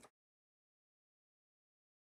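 Complete silence: the sound track cuts out just after the start.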